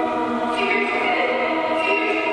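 Background choral music: a choir holding sustained chords, moving to new notes about half a second in and again near the end.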